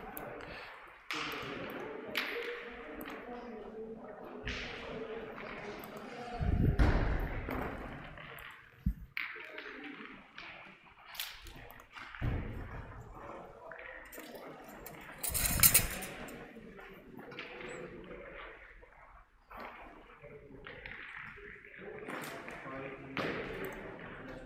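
Indistinct voices in a large hall, broken by a few sharp metallic clacks of pétanque boules knocking together as they are gathered up, the loudest about fifteen seconds in.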